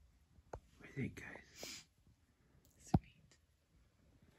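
Hushed whispering between hunters, then a single sharp click about three seconds in.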